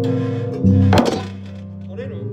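Live improvised jazz from a piano, two basses and drums: low held bass notes, with a sharp struck hit about a second in, after which the music drops quieter.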